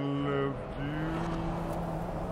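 Street traffic with a car driving past close by: a rushing road noise that builds about half a second in. Steady low held tones sound over it.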